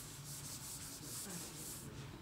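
Quiet, rapid rhythmic rubbing or scratching, about four strokes a second, that stops near the end.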